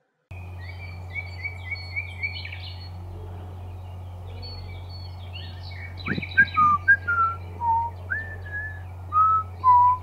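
Outdoor ambience track of birds chirping in short, quickly repeated notes over a steady low hum. From about six seconds in, a string of separate whistled notes follows, each sliding up or down in pitch.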